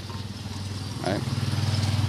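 A small engine running steadily with a low hum, slowly getting louder.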